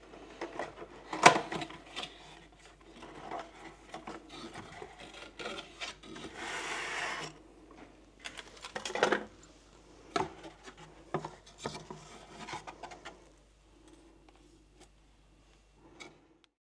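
Cardboard box being handled and opened, with rubbing and scraping of cardboard and a scatter of small knocks. The sharpest knock comes about a second in, a longer rasping scrape around six to seven seconds, and another knock near nine seconds.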